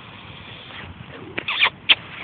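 A handler's short, high, squeaky kissing sounds and tongue clicks, several in quick succession in the second half, urging a loose horse forward; before them only a faint steady hiss.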